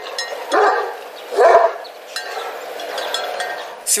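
Kangal livestock guardian dog barking twice among a herd of goats, with a faint steady ringing behind.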